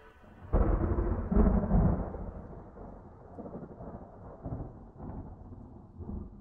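A thunderclap about half a second in, swelling again a second later, then rolling on with uneven rumbles and slowly fading away.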